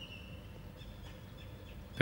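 A quiet pause between spoken phrases: faint steady background noise with a few faint high chirps.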